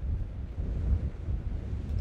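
Strong wind buffeting the microphone in gusts, a low uneven rumble, with the surf of breaking waves behind it.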